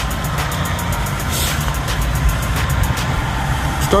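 Steady low rumble of road traffic mixed with the rush of fast-flowing river water.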